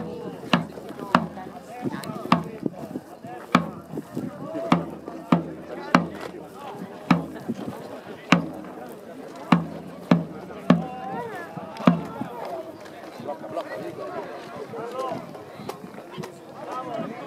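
Military drum beating a steady marching cadence, single strokes a little under two a second, stopping about twelve seconds in. Voices murmur underneath.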